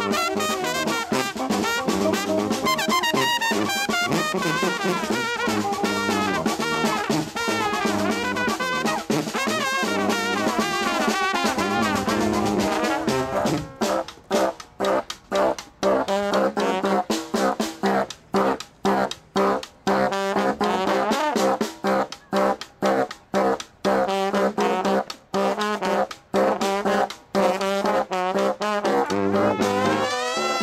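A street brass band is playing an upbeat tune: trombone, trumpet, baritone saxophone, sousaphone and snare drum. About halfway through, the playing turns to short, punchy hits with brief gaps between them.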